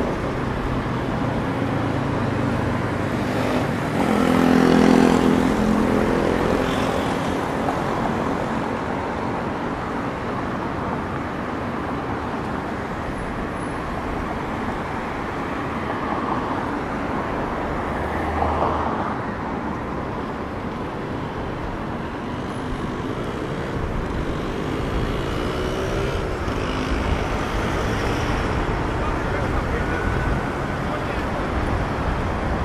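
Steady city road traffic: cars and other vehicles running and passing on a multi-lane street. A louder engine swells up and passes about four to six seconds in.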